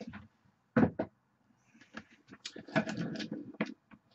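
A single thump about a second in, then a run of clicks and knocks from handling, as a metal tube vape mod is set down on a table.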